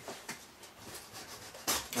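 Faint handling of a cardboard shipping box on a table: soft rustles and small clicks, with one short, louder scrape near the end.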